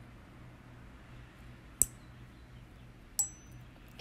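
Two sharp metallic clicks from a steel needle holder as a suture knot is tied, the second followed by a brief high ring, over a faint steady hum.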